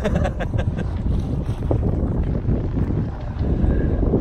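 Wind rumbling on a phone microphone aboard a small sailboat under way, with the rush of water from the moving boat beneath it; the noise is steady and sits mostly low.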